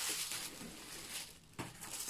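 Lime green tissue paper rustling softly as it is handled, strongest in the first second and then dying away.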